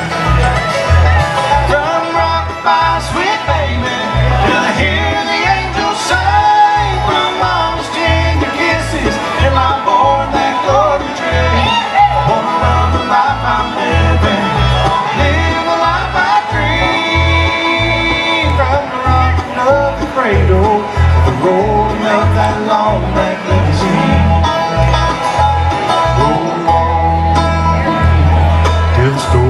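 Live bluegrass band playing an instrumental break with banjo, fiddle, acoustic guitar and mandolin over a steady low beat. A long held high note comes about two-thirds of the way through.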